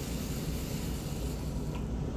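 Thick blueberry jam boiling in a stainless steel saucepan on a gas stove: a steady bubbling hiss as its liquid cooks down.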